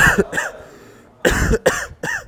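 A sick man coughing into his fist: a short bout of coughs at the start and another bout about a second later.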